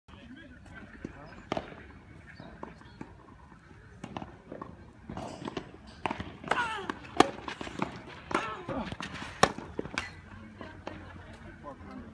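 Tennis rally: rackets striking the ball, sharp hits every second or two, the two loudest in the second half, with people's voices in the background.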